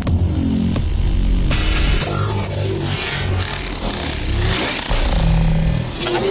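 Electronic music with a deep bass line; brighter, fuller upper layers come in about a second and a half in.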